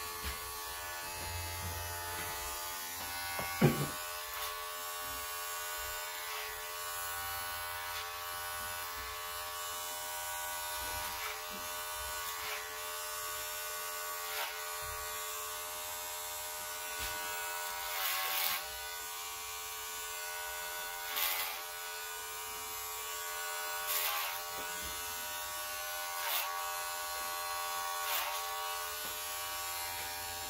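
Electric hair clippers with a guide-comb attachment running with a steady buzz while cutting hair. About four seconds in there is one sharp click, and in the second half there are brief louder bursts every two to three seconds.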